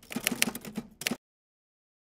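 Typewriter sound effect: a quick run of key clacks that stops a little over a second in.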